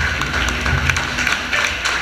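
The close of a live rockabilly song by a trio of acoustic guitar, electric guitar and double bass. The bass's low notes drop away, followed by irregular taps and clicks over a hazy room sound.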